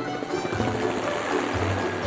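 Cartoon helicopter-rotor sound effect, a fast, even chopping whirr, over cheerful background music.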